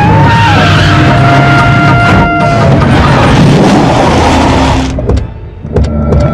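A car engine and tyre noise mixed with background music in a film soundtrack. The sound drops away briefly about five seconds in.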